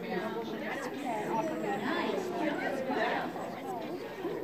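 Indistinct chatter: people talking, with no clear words.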